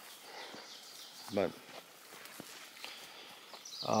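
Faint footsteps swishing through wet grass, with a few soft ticks scattered through.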